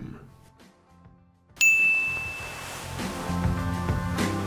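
After a near-quiet second and a half, a single bright ding rings out and fades over about a second, and music starts with it and keeps going.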